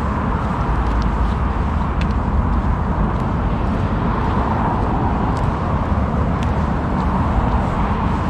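Steady motorway traffic noise with a heavy low rumble, and a few faint ticks scattered through it.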